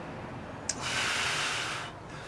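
A small click, then a long breath drawn or blown through the nose, lasting about a second.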